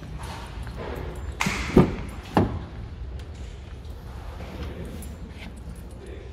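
Door of a Ford Ranger pickup being opened and handled: a few sharp clicks and knocks from the latch and door between about one and a half and two and a half seconds in, the middle one loudest, over a steady low rumble of camera handling.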